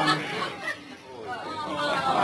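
Murmuring chatter of voices from the audience, dying down about halfway through and picking up again near the end.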